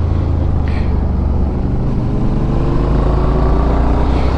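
Suzuki V-Strom 650 XT's V-twin engine running under way, with a steady rush of wind and road noise. Its pitch rises gradually in the second half as the bike accelerates.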